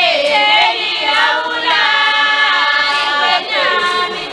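A large chorus of women and girls singing together unaccompanied, a traditional Swazi maidens' song. Long held notes slide down in pitch at the ends of phrases, about a second in and again near the end.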